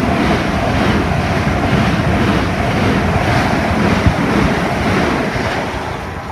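Southern Class 377 Electrostar electric multiple unit running through the station at speed close by: a loud steady rush of wheel, air and wind noise with a single sharp knock about four seconds in, dying away near the end.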